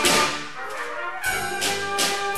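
School wind band playing, with brass to the fore in sustained chords and sharp percussion hits about a second in and again shortly after.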